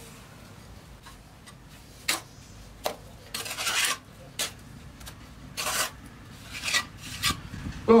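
Steel mason's trowel scraping wet cement mortar off a board and onto a rendered wall: several short rasping scrapes and a few sharp taps, starting about two seconds in.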